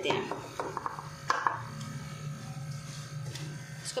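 Wooden spatula knocking and scraping in a nonstick wok as powdered sugar is tipped in and stirred through a dry, crumbly panjeri mix: several light knocks early on and a short scrape about a second in. A steady low hum runs underneath.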